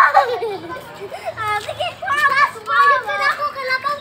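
Young children's high-pitched voices chattering and calling out while they play, with a loud shout at the very start.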